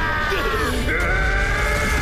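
Anime soundtrack: music under a long, drawn-out cry. The cry slides downward, breaks off shortly before a second in and starts again higher. A low rumble runs beneath it.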